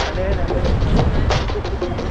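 A man laughing and talking over background music, with a steady low rumble of outdoor noise.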